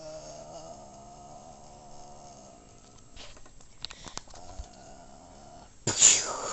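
A faint, drawn-out voice-like sound held on one pitch, with a few light clicks about three to four seconds in and a sudden loud noise right at the end.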